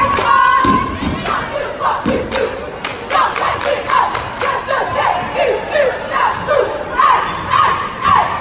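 A cheerleading squad chanting a cheer together, shouting in unison, with rhythmic hand claps and foot stomps keeping time.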